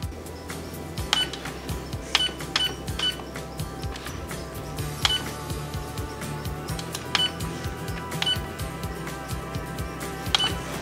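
Key-press beeps from a Canon PIXMA printer's control panel: about seven short high beeps at uneven intervals, three of them in quick succession, as the arrow and OK buttons are pressed to change menu settings. Background music plays underneath.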